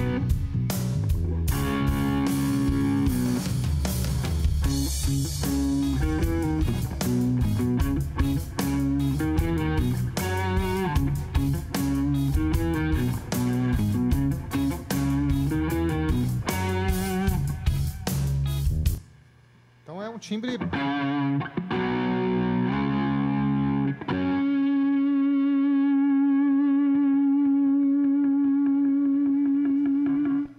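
Telecaster-style electric guitar played through drive pedals, chording along with a backing track of drums and bass. The track stops abruptly about two-thirds of the way in. The guitar then plays a few chords alone and holds one long note for several seconds, which is cut off at the end.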